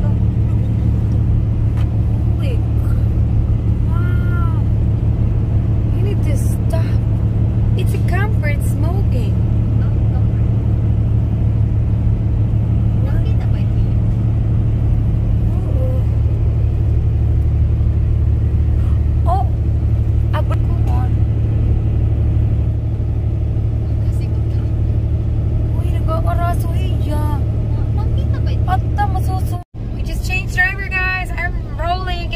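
Semi truck's engine and road noise heard inside the cab at highway speed: a loud, steady low drone, with faint voice-like sounds now and then. The sound cuts out for a moment near the end.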